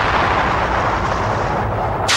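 Explosion sound effect: a long, loud rushing blast of noise whose hiss thins out near the end.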